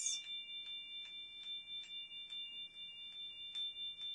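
A singing bowl being rubbed around its rim with a wooden stick, giving a steady, high, ringing hum of several held tones. Faint ticks come about three times a second.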